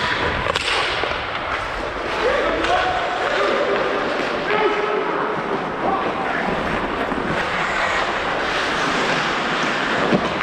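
Ice hockey play heard from on the ice: a continuous scrape of skates, sharp clacks of sticks and puck against the ice and boards, and a few distant players' shouts.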